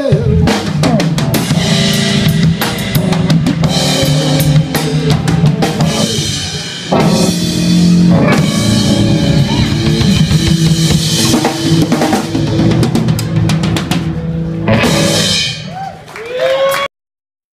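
Live electric blues band playing: electric guitar over bass guitar and a drum kit with bass drum and cymbal crashes. The music drops briefly about six seconds in, then comes back in full.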